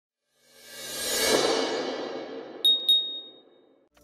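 Intro sound effects: a whoosh that swells up over the first second and slowly dies away, then two quick high pings about a third of a second apart, the second ringing on briefly before fading out.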